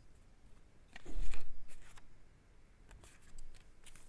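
Short rustling, scraping handling noises close to the microphone, one burst about a second in with a light bump at its start and a smaller one near the end.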